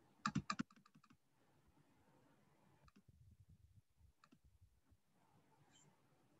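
Computer keyboard keystrokes over a near-silent line: a quick run of four or five sharp clicks just after the start, then a few faint scattered clicks.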